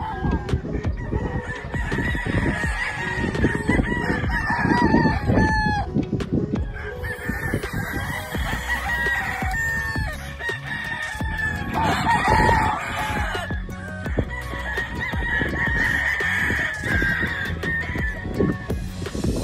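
Several gamefowl roosters crowing, one crow after another and often overlapping, with a brief lull about six seconds in.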